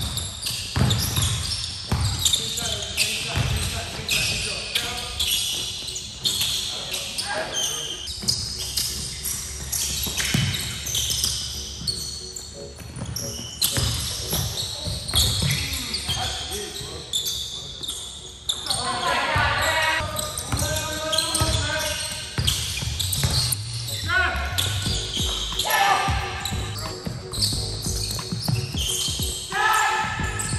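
A basketball bouncing and being dribbled on a hardwood gym floor during a game, heard as repeated knocks, with players' voices calling out, mostly in the second half.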